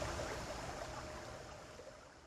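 A steady background hiss, fading out gradually toward the end.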